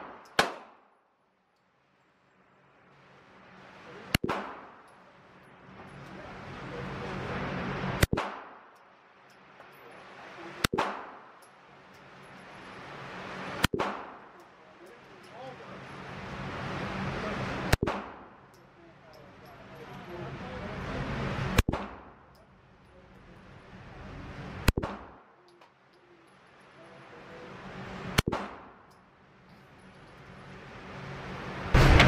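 Handgun shots at an indoor range, fired singly, nine in all, one every three to four seconds. Each is a sharp crack with a short echo, and a steady hum swells up in the gaps between shots.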